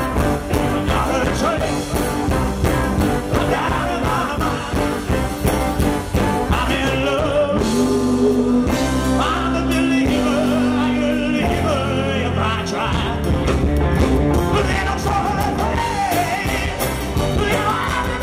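Live rock and roll band with male lead vocals: drums, electric and acoustic guitars, bass and keyboard playing with a steady beat. About halfway through, the band holds a long sustained note for a few seconds before the beat returns.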